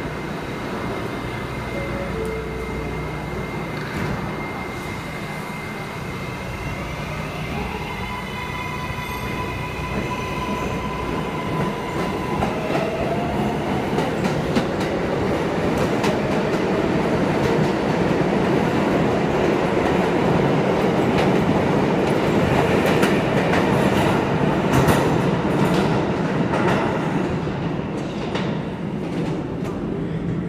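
R188 subway train pulling out of the station. The whine of its electric traction motors rises in stepped tones as it gathers speed, and the running noise grows louder as the cars go past. Wheels click over the rail joints in the later part, and the sound eases off near the end as the train leaves.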